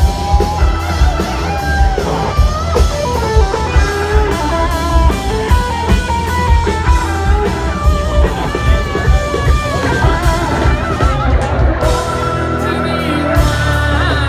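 Live rock band playing over an outdoor stage PA: electric guitars over a drum kit keeping a steady beat of about two hits a second.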